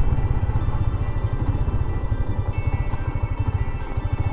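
Steady low rumble of wind and engine from a Yamaha Sniper 150 motorcycle being ridden, with background music faintly under it.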